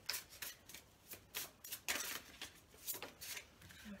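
Tarot cards being shuffled and handled: a series of short, crisp papery card sounds at irregular intervals.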